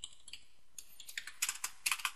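Computer keyboard being typed on: quiet at first, then a quick run of several keystrokes in the second half.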